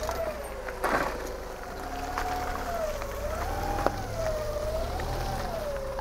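Propane-fuelled forklift engine running low and steady, with a single high tone wavering slowly up and down about every second and a half over it.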